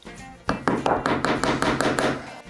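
Small upholstery hammer driving a tack through fabric into a wooden chair back. About half a second in it starts a quick run of light taps, several a second, over background music.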